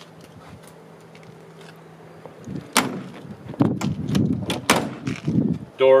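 The door of a 1938 Buick Special convertible being swung shut, heard as a cluster of sharp knocks, clicks and low thuds through the second half, after a couple of quiet seconds.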